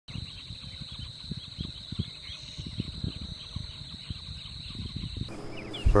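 Wetland ambience: a steady high insect drone with scattered faint shorebird chirps and low knocks, the background changing abruptly about five seconds in.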